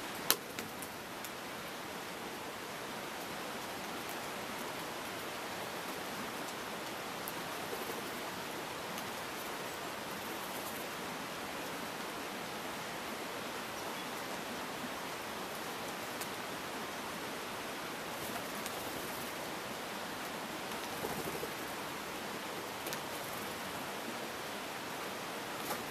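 Steady rushing outdoor noise with no distinct calls, and one sharp click about a quarter second in.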